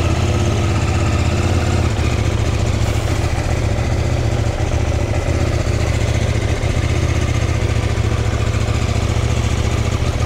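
CFMOTO 800NK's 799cc parallel-twin engine running steadily at low revs while the bike is ridden slowly.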